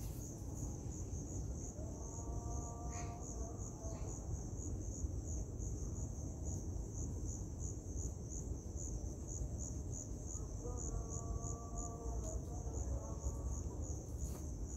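A high-pitched insect chirping without pause, pulsing about three times a second. Twice, a lower pitched call sounds for a few seconds over it.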